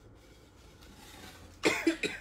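Quiet room tone, then a single short cough from a person near the end.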